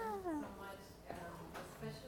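A short vocal sound from a person at the very start, its pitch gliding downward, followed by faint, indistinct talk in the room.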